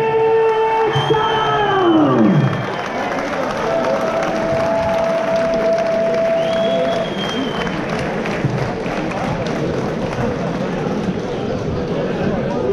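A ring announcer over the PA draws out the winner's name in one long held call that falls away about two and a half seconds in, then a hall crowd cheers and applauds.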